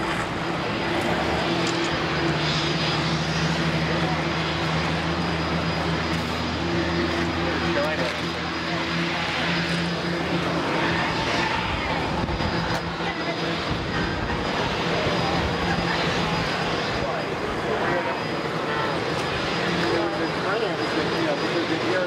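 A piston aircraft engine running steadily, its even hum strongest over the first half and fading out about halfway through, under the chatter of a crowd.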